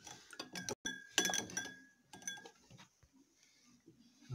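Metal spoon stirring liquid in a glass tumbler, clinking against the glass: several ringing taps in the first two seconds, then only a few faint ticks.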